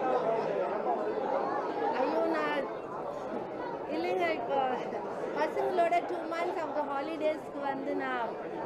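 People talking over one another: overlapping chatter of several voices.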